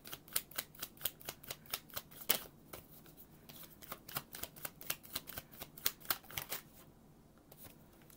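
Tarot deck being overhand shuffled by hand: a quick run of soft card clicks, about five a second, with a short pause near the middle. The clicks stop with about a second and a half to go.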